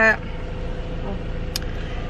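Steady low rumble inside a stationary car's cabin, with a faint steady hum above it and a small tick about a second and a half in.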